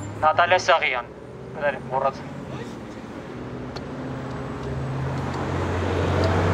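Low, steady engine hum of road traffic that grows steadily louder over the last few seconds, after a couple of short spoken phrases near the start.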